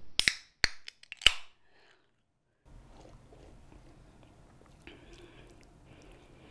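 Aluminium sparkling-water can being opened: several sharp clicks and a short fizzing hiss within the first second and a half, followed by a quiet stretch.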